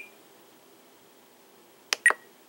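Quiet room tone, then a single sharp click near the end as a control on the Spektrum DX6 radio transmitter is pressed.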